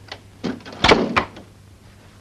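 A wooden front door being shut: a first knock, then a loud thud and a sharper click just after.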